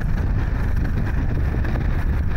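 Wind buffeting the microphone outdoors: a loud, steady rumble with a hiss above it.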